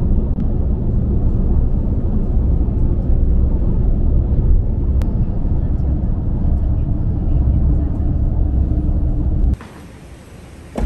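Road and engine noise inside a vehicle moving at speed on a highway: a loud, steady low rumble that cuts off suddenly near the end.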